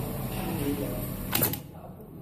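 Semi-automatic zipper box fixing machine making one sharp clack about one and a half seconds in as its die presses a No. 8 metal box onto the zipper end, over a low steady hum.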